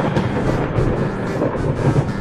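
A loud, steady rumbling noise with a deep low end, like an edited-in sound effect; it begins and ends abruptly rather than fading.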